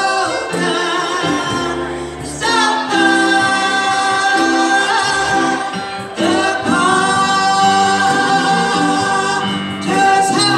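Gospel vocal group singing over instrumental backing, with two long held notes from about three seconds in.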